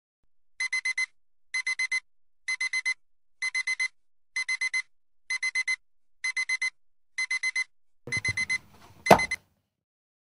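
Digital alarm clock beeping in quick groups of four high electronic beeps, about one group a second. Near the end a single sharp knock, the loudest sound, cuts the beeping off.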